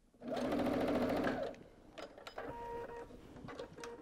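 Sewing machine stitching fast down a quarter-inch seam in cotton quilting fabric for about a second, then stopping. Quieter clicks and a short faint whir follow.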